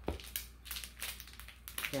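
A soft plastic packet of wet wipes crinkling as it is handled and turned over, a quick run of small crackles.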